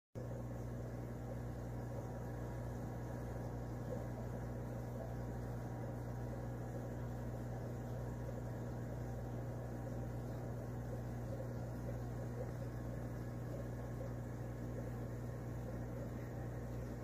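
Aquarium equipment running with a steady low hum and a soft hiss.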